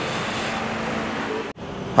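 Steady rushing background noise with no clear pitch. It cuts off abruptly about one and a half seconds in and gives way to a quieter room tone.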